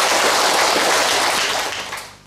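Audience applauding, a dense clapping that dies away near the end.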